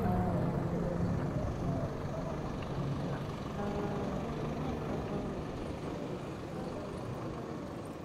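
Outdoor city ambience: a steady hum of road traffic, slowly getting quieter.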